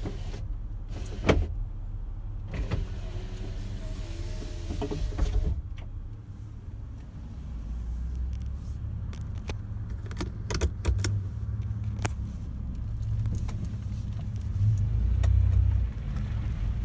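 Cabin of a 2000 Toyota 4Runner with its 3.4 V6 running as the truck rolls slowly, a steady low rumble. Scattered clicks and knocks sound over it.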